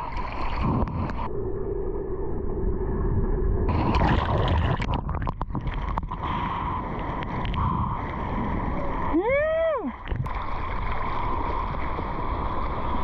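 Seawater sloshing and splashing around a waterproof action camera at the surface, going muffled for a couple of seconds about a second in. Late on, a person's voice glides up and back down once in a short hoot.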